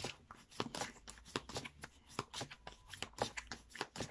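A deck of oracle cards being shuffled by hand: a fast, irregular run of soft card clicks and flicks.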